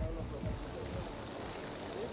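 Background music with a steady beat ending within the first second, leaving a steady outdoor background noise with a faint held tone.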